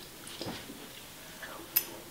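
A fork lifting penne out of a baking dish and the mouthful being taken: faint soft scrapes, then one short sharp click near the end.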